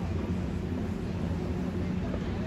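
Steady low rumble of outdoor background noise, with faint distant voices now and then.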